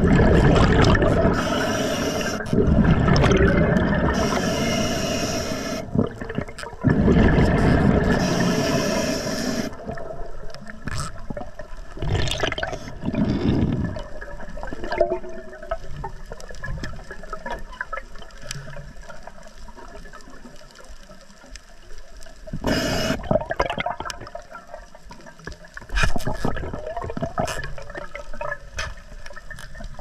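Scuba diver breathing through an Atomic regulator underwater: each breath brings a hiss and a rushing burst of exhaled bubbles, coming every few seconds and loudest in the first ten seconds, then quieter and more spaced out.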